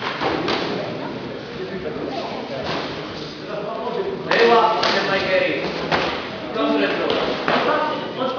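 Punches and kicks thudding on the fighters' bodies in a karate bout, several blows in quick succession, with men's voices shouting in an echoing hall.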